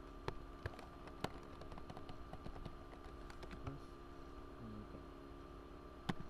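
Computer keyboard typing: scattered key clicks, a few near the start and a quick cluster a little past the middle, over a steady faint electrical hum.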